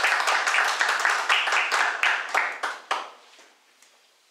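Applause from a small audience, dense hand clapping that thins out to a few single claps and stops about three seconds in.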